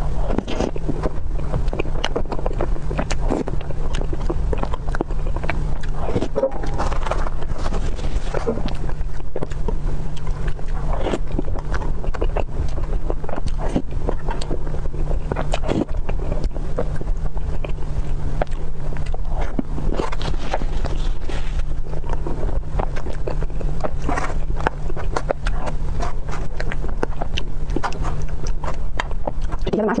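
Close-miked eating of a soft chocolate cream dessert: a spoon scraping and digging into the cream, and wet mouth sounds of taking and chewing the bites, as many short irregular clicks and smacks. A steady low hum runs underneath throughout.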